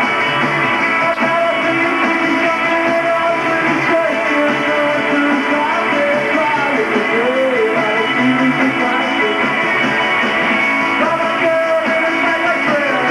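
Rock band playing live: distorted electric guitar and drums, with a male voice singing.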